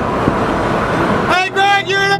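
Steady road and engine noise inside a moving car's cabin. About one and a half seconds in it gives way to music with gliding pitched notes.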